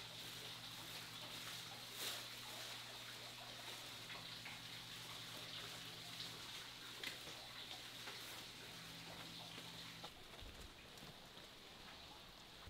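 Faint crinkling and rustling of a black plastic garbage bag being pulled and tucked over a plastic tote, with a few soft taps, over a steady low hum that stops about ten seconds in.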